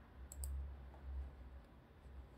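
Two quick clicks of a computer mouse, close together, over a low room rumble.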